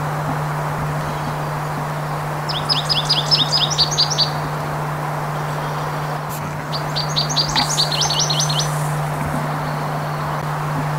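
American goldfinch song: two bursts of rapid, high notes, each about two seconds long, the first a few seconds in and the second past the middle, over a steady low hum.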